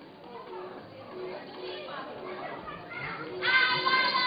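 Actors speaking stage dialogue, with one voice turning loud and high about three and a half seconds in.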